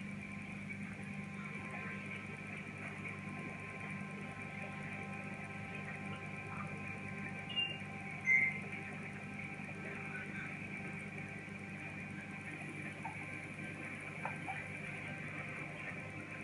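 Steady hum from a running reef aquarium's pumps and equipment, holding several constant tones. Two brief small noises stand out about eight seconds in.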